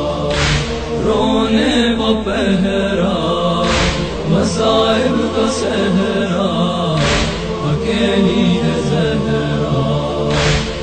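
Urdu noha, a Shia mourning lament, chanted in sustained voices, with a short sharp hiss about every three and a half seconds.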